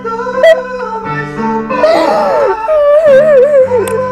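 Piano chords held and changing every second or so, with a high voice singing over them in a strained, wavering line that bends up and down in pitch.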